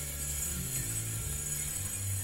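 Upright bass playing a line of low notes that change pitch every half second or so, with a steady high shimmer above it. The tenor saxophone is not being played.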